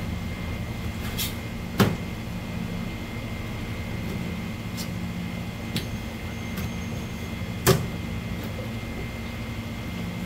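Knocks on a plastic cutting board as olive flounder fillets and a whole fish are handled during filleting: two sharp knocks about six seconds apart, the second near the end, with a few fainter taps between, over a steady hum.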